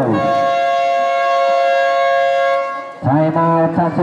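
Basketball game buzzer sounding one steady, high horn tone for about two and a half seconds, then cutting off.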